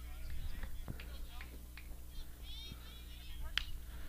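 Quiet ballfield background with a low steady hum and faint distant calls, then a single sharp crack a little before the end: the bat meeting the ball on a weakly hit ground ball to the infield.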